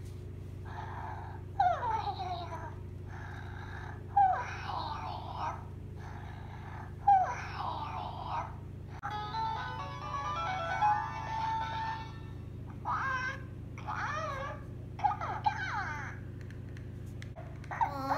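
A Hatchimals Penguala electronic toy inside its egg makes a string of short chirping, babbling calls through its small speaker, each with gliding pitch and about a second long, with pauses between them. About nine seconds in it plays a short stepped electronic tune, then goes back to chirping.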